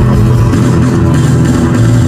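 A live rock band playing: electric guitars and bass over an electronic drum kit, a steady instrumental passage with no singing.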